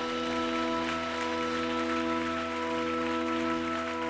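Live band holding one sustained chord, with a steady hiss of cymbal wash over it.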